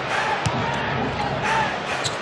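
Basketball arena crowd noise during live play, a steady hubbub of the crowd, with one sharp knock about half a second in.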